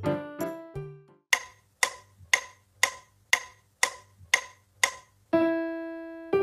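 Casio LK-265 keyboard playing a few piano-tone notes, then a steady run of short clicks, about two a second, like a metronome beat. A single sustained piano note starts about five seconds in.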